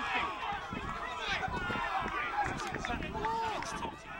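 Several men's voices shouting and calling over one another on an open football pitch, overlapping players' calls rather than one clear speaker.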